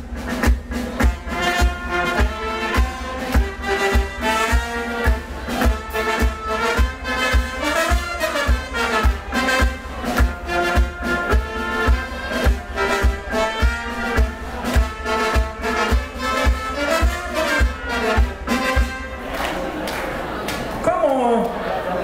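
Live brass band, with trumpets and trombones over a steady low beat about three times a second, playing dance music. The music stops a few seconds before the end, and a voice begins.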